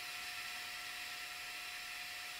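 Steady faint hiss of background noise with a faint steady tone under it; no rising sweep tone is heard.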